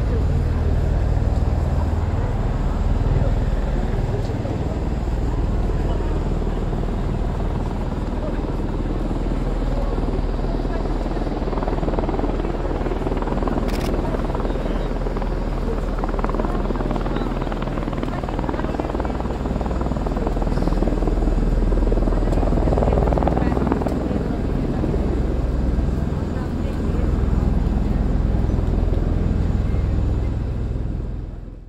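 Bell Boeing CV-22 Osprey tiltrotor flying low in helicopter mode, its prop-rotors tilted up: a loud, steady, deep rotor drone with engine noise on top.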